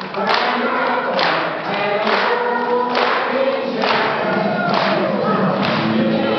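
A group of young girls singing a song together, with a sharp regular beat striking about once a second.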